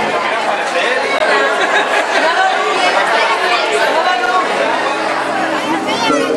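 Chatter of many voices talking at once, children's voices among them, as a steady babble with no single voice standing out.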